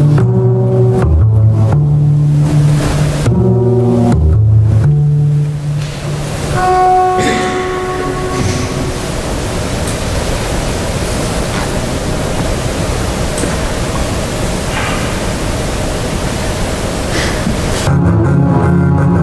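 Solo double bass played with the bow: a few low bowed notes, a brief higher note about six seconds in, then a long stretch of steady, pitchless bow noise, an extended bowing technique.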